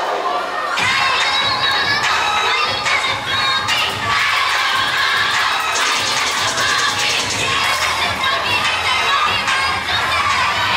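Many children's voices shouting and cheering at once, loud and unbroken, with a low repeated thumping underneath that starts about a second in.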